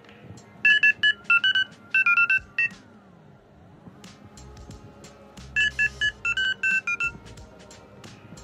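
Smartphone dialpad key tones as an eleven-digit phone number is tapped in quickly: a run of about eleven short two-note beeps about half a second in, and a second run of about eleven near six seconds in for the next number. Steady background music plays underneath.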